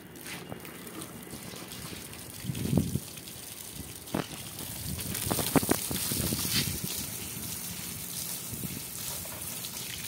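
Water from a garden hose spraying onto a wire cage and wet concrete, a steady hiss that sets in about halfway through. A few short knocks come before it.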